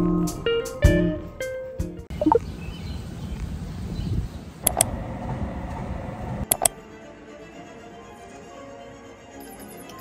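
Background music with plucked guitar-like notes, which give way about two seconds in to a noisy ambient stretch broken by two sharp clicks, then a quieter steady background.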